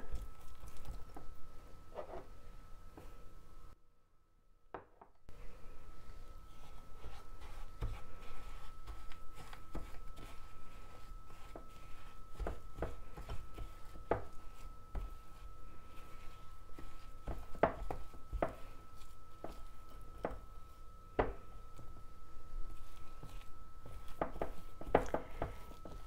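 Silicone spatula stirring and scraping a granulated-sugar lip scrub in a glass bowl: irregular soft knocks and gritty scrapes against the glass as the sugar is worked into the thick base.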